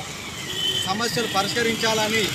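A man speaking, with the steady noise of road traffic behind him.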